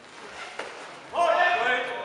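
A single sharp click from the sabre exchange about half a second in, then a loud shout lasting under a second, the call that halts the exchange, echoing in a large hall.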